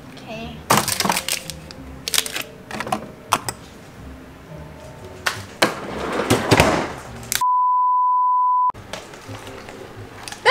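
Scattered clicks and knocks of containers and a refrigerator drawer being handled, with a rustling stretch a little past the middle. Near the end, a steady one-pitch beep about a second long cuts in and out abruptly while all other sound drops out: an edited-in censor bleep.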